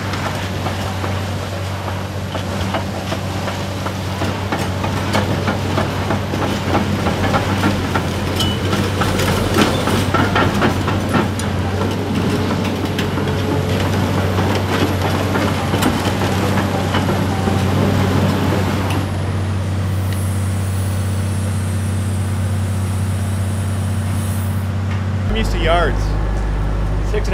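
Caterpillar 395 hydraulic excavator's diesel engine running at a steady speed, with clanking and knocking from the machine as it works for roughly the first two-thirds, then a steadier engine hum. It is a non-Tier 4 build with unrestricted exhaust.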